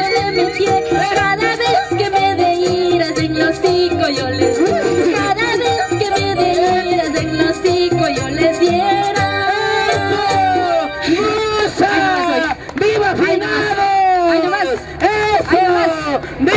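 Live electronic keyboard playing an instrumental break of Ecuadorian folk dance music with a steady beat. From about eleven seconds in, a voice calls out over the music several times.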